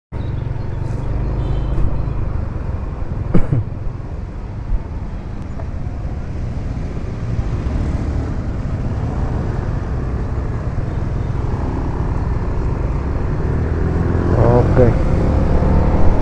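Steady low rumble of a Yamaha motor scooter being ridden through traffic, as heard from a camera on the rider. A brief sharp sound comes about three and a half seconds in, and a short rising pitched sound near the end.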